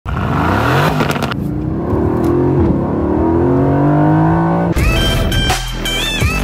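2019 Aston Martin Vantage's twin-turbo V8 exhaust revving. Its pitch climbs sharply in the first second, dips, then holds high and rises slowly. About five seconds in it cuts off abruptly as electronic music with a beat begins.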